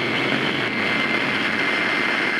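A loud, steady rushing noise with a high, steady whine running through it.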